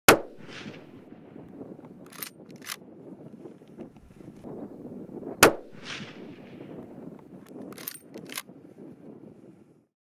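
Two rifle shots about five seconds apart, each with a short echoing tail, with a few sharp clicks in between and a low outdoor background.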